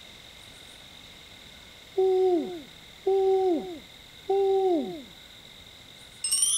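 Three owl hoots about a second apart, each held on one pitch and then sliding down at the end.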